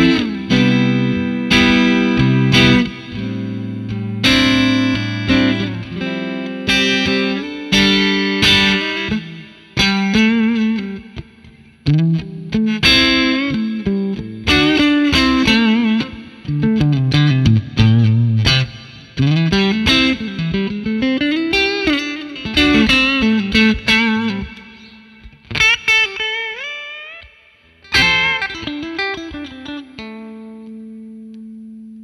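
Electric guitar, a Stratocaster played through a Wampler Pantheon Deluxe overdrive pedal into a Fender '65 Twin Reverb amp, set as a low-gain overdrive with a thick midrange. It plays ringing chords at first, then single-note lead lines with string bends and vibrato, and closes on a few chord hits.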